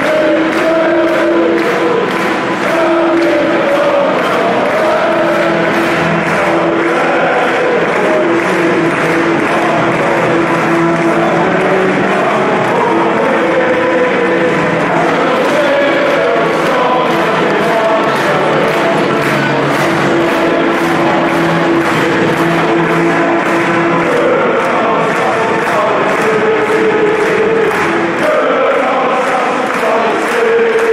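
Football stadium crowd singing together in unison, thousands of voices holding long notes over a steady rhythm.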